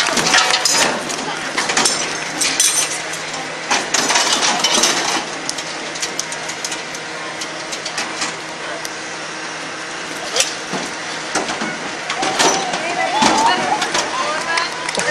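Metal parts knocking and clinking in a quick, irregular run of clicks and taps as something is put back together by hand, with voices in the background.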